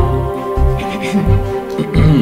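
Film background score: sustained chords over a low bass that pulses on and off.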